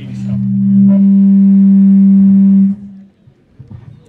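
A loud, steady held tone with overtones, swelling over the first second and cutting off sharply about 2.7 s in.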